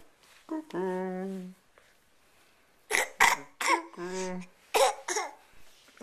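A toddler coughing: short sharp coughs about halfway in and again near the end. Two held, even-pitched voice sounds come between them, one about a second in and one around four seconds in.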